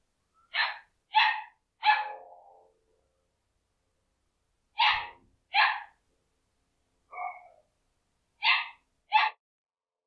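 A dog barking at a fox: eight short barks in bunches of three, two, one and two, the single one near the middle fainter.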